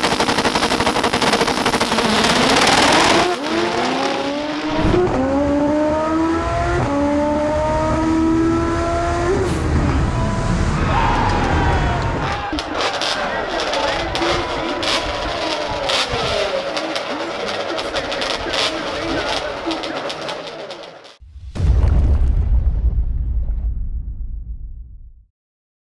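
Drag race cars launching at full throttle with a loud roar. An engine then climbs in pitch through several quick gear shifts as it runs down the strip and fades into the distance. Near the end a deep boom comes in.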